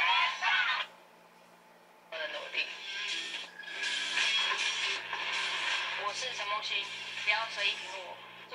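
Television audio heard through the set's speakers: a voice for the first second, then a brief near-silent gap as the channel changes, then a programme with voices over music from about two seconds in.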